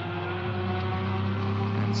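GT3 race car engine running hard at a steady, nearly constant pitch.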